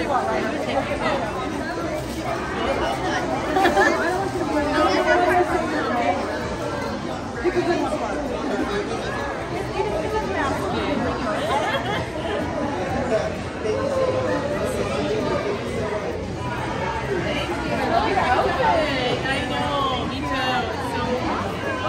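Crowd chatter: many people talking over one another, with no single clear voice.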